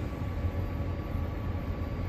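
Combine harvester running while shelling corn, heard from inside the cab: a steady low drone with a faint, even hum above it.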